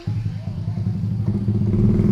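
A small motorbike engine comes in suddenly and runs at a steady low idle, growing slightly louder.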